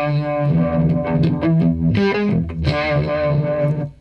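Strat-style electric guitar through Univibe and Octavia effects pedals, playing a bluesy phrase in E minor pentatonic with ringing, overdriven notes. The playing stops shortly before the end.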